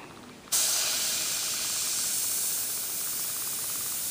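Badger Sotar 2020 airbrush spraying primer, a steady hiss of compressed air through the nozzle that starts abruptly about half a second in. The needle is set for the airbrush's finest spray.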